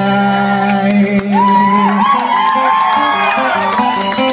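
Acoustic guitar strummed live with a voice singing over it; the held chord changes about halfway through.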